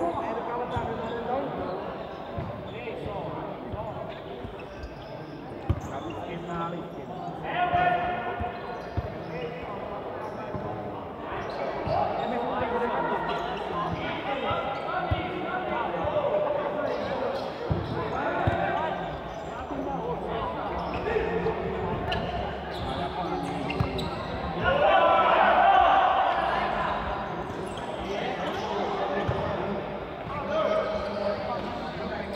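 Futsal ball being kicked and bouncing on an indoor court, sharp scattered knocks, under continuous shouting and chatter from players and spectators that echoes in a large sports hall. The voices swell loudest about three quarters of the way through.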